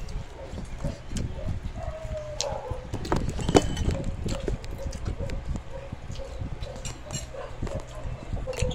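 Close-up eating sounds of small children: chewing and mouth smacks with small clicks of a spoon and fingers on a plate, and a sharp clink about three and a half seconds in. A faint wavering tone runs underneath from about two seconds in.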